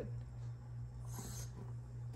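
Kitchen faucet lever eased open to a thin trickle: a faint, brief hiss about a second in, over a steady low hum.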